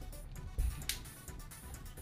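Faint background music, with a low thump about half a second in and a sharp click just after.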